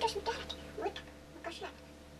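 A long-haired cat giving a few short meows, mixed with a woman's soft voice; the calls come near the start and again about a second and a half in, then fade.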